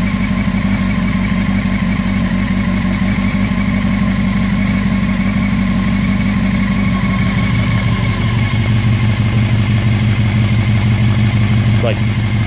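Honda CBR600 F4i's inline-four engine idling steadily and smoothly, brought back to life after six years sitting unused. The deep exhaust note grows stronger in the last few seconds.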